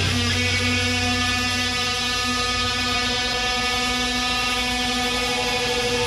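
Electric guitar and amplifier feedback ringing out as a steady, held drone at the end of a live punk-rock song.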